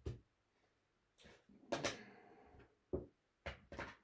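Casino chips clacking together as they are picked up off the craps layout and set back into the chip rack: a series of sharp clicks, one a little before two seconds in trailing into a short rattle.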